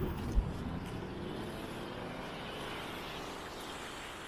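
Road traffic noise heard from a moving bicycle, a steady rush of passing cars that slowly fades, with a single low thump about half a second in.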